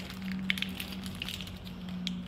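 Snack-bar wrappers crinkling as they are peeled back, heard as scattered faint crackles with one sharper click, over a steady low hum.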